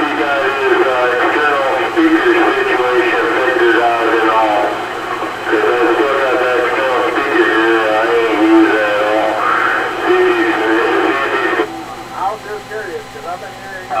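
A voice coming in over a CB radio receiver, narrow and tinny and too garbled to make out. The transmission cuts off abruptly about three-quarters of the way through, leaving a quieter, fainter background.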